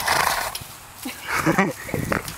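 A donkey blowing out sharply through its nose, a breathy burst in the first half second, as it sniffs at a small dog through the fence; a short voiced sound follows about a second and a half in.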